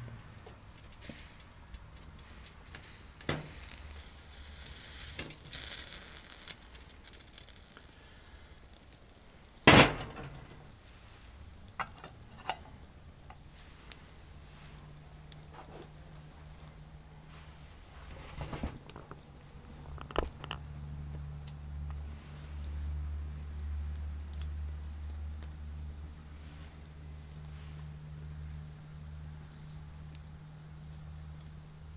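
Pine twigs burning in a small wire-mesh wood-gas (TLUD) camp stove under a pot of water, crackling faintly with a few pops and one sharp, loud snap about ten seconds in. A low steady hum comes in during the second half.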